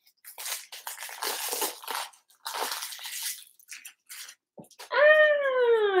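Plastic wrapping on a tarot deck crinkling and rustling as it is pulled off, in several bursts over the first three seconds or so. Near the end comes a loud, drawn-out vocal "ah" falling in pitch.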